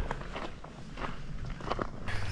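Footsteps on a gravel campground road, faint and irregular.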